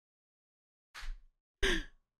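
A man's breathy laughing exhales, two short puffs of breath, the first about a second in and the second near the end.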